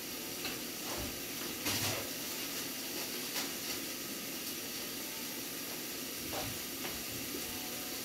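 Steady, fairly quiet hiss and sizzle of food cooking in pots on a gas stove, with a few faint knocks in the background.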